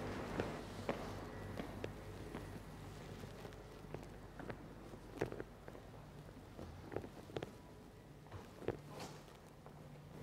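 Faint footsteps on a timber floor: soft, irregular taps over a low steady hum.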